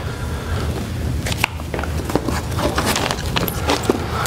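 Footsteps and scattered clicks and knocks of a cordless drill being picked up and handled, over a low steady hum.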